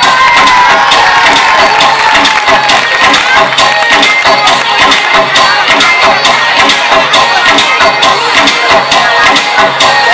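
Loud music with a steady beat playing over a stage act, with an audience cheering over it.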